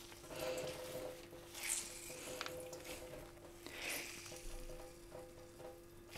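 Soft, faint rustling and crackling of fresh guelder rose flowers being squeezed and crushed by hand, in several soft swells; the flowers are being bruised to start their oxidation for tea.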